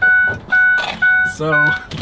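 A bus's electronic dashboard warning chime beeping evenly, about twice a second.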